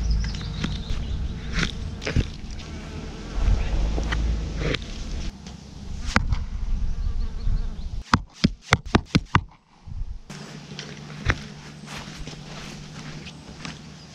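Arrows striking a target boss with sharp knocks, including a quick run of hits about eight seconds in, while a flying insect buzzes close to the microphone.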